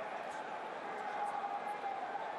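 Steady background noise of an ice hockey arena crowd at a moderate level, with a faint steady tone running through it.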